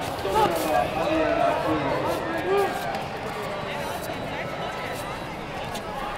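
Several voices shouting over one another in a large hall, loudest in the first half, as coaches and spectators call out during a kickboxing bout. A few sharp thuds of gloved punches and kicks land among the shouts.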